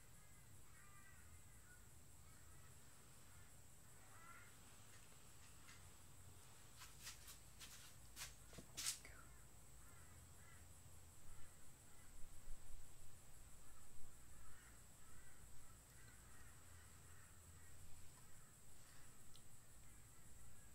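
Very quiet room tone with faint, distant bird calls coming and going. A few faint clicks come about seven to nine seconds in.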